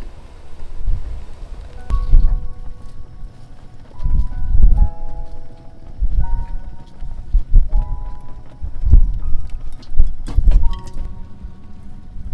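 Background music: a slow melody of held notes over a deep bass pulse about every two seconds.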